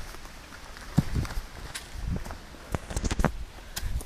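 Hiking boots stepping and scuffing on rock as a hiker scrambles over boulders. There are several sharp knocks and scrapes: one about a second in, and a cluster near three seconds.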